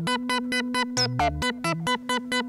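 Eurorack modular synthesizer playing a sequence from a Doepfer A-155 analog/trigger sequencer: a quick, even run of short pitched notes, about seven a second, over a steady low drone. A few deeper bass notes come in, and one sharp downward zap sounds about a second in. The note pitches are random, set by quantized random voltages.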